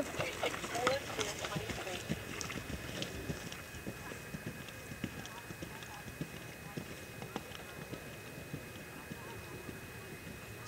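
Horse's hoofbeats on grass as it sets off at speed and moves away, the strikes loud at first and fading over the first few seconds.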